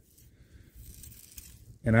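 Faint low background noise with no distinct event, then a man's voice starts near the end.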